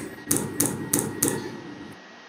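Four sharp finger flicks, about three a second, on the saline-filled plastic chamber and syringe of a Stryker intracompartmental pressure monitor, knocking air bubbles out of the chamber.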